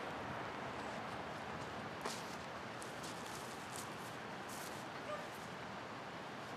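Steady outdoor background noise, like distant traffic or wind, with two faint short sounds: a knock about two seconds in and a brief pitched call about five seconds in.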